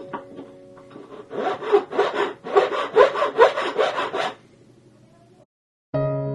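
Hand file worked back and forth over a silver piece on a wooden bench block. It makes quick, even strokes, about five a second, for about three seconds, then stops.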